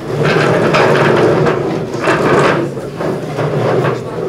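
Wooden chairs dragged, scraped and knocked over a tiled floor as many people move their seats at once, loudest in the first second and again about two seconds in.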